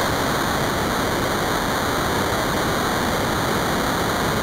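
A steady, even hiss of noise, like static or rushing water, with no rhythm or change.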